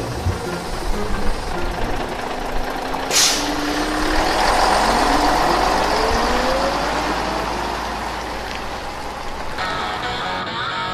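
Sound effect of a large vehicle such as a bus running, with a sharp air-brake hiss about three seconds in. After that the engine note rises steadily in pitch as it pulls away.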